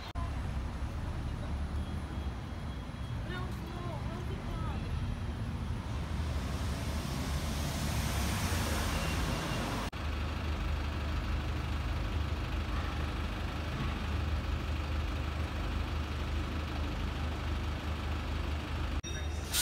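City street sound with passers-by's voices and a hiss that swells for a few seconds. It cuts off sharply about ten seconds in and gives way to the steady low hum of double-decker bus engines running close by in slow traffic.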